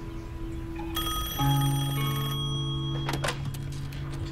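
A landline telephone bell rings once, starting about a second in and lasting about a second and a half, over sustained background music. A short clatter follows near the end as the handset is picked up.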